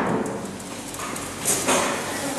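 Footsteps and knocks on a hard floor, with two sharp clicks about one and a half seconds in.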